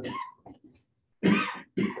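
A man coughs about a second in: a short, sharp cough that breaks off a lecture.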